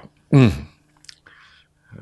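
A man's short "mm" murmur falling in pitch, then faint breathing with a small click.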